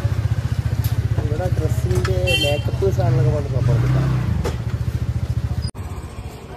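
A small motorcycle engine idling close by, a steady rapid low pulsing, with voices around it; it cuts off suddenly near the end.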